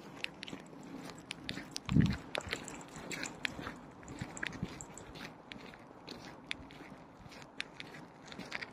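Dry fallen leaves and grit crunching and crackling underfoot in short, irregular clicks, with one dull thump about two seconds in.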